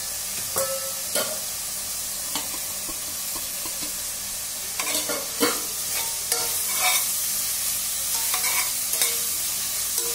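Sliced onions frying in oil and masala in a stainless steel pot, with a steady sizzle. A metal spatula scrapes and clicks against the pot as they are stirred, a few strokes at first and busier stirring from about halfway.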